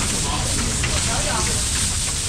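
Steady rain falling, an even hiss with a faint crackle, with faint voices over it.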